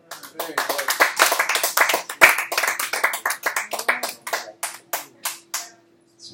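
Small audience applauding, dense at first and thinning out to a few scattered last claps near the end.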